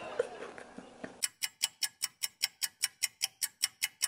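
Clock-ticking sound effect: quick, even ticks about five a second, starting about a second in. It is used as a time-passing transition.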